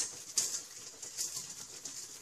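Faint, soft stabbing and handling sounds of a knife being pushed into a raw lamb shoulder over a metal bowl, with a few light knocks and rustles.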